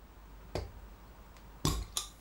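A thin metal carabiner clip levers a crown cap off a glass soda bottle: a small metallic click about half a second in, then, near the end, the cap pops off with a short fizzing hiss of escaping gas.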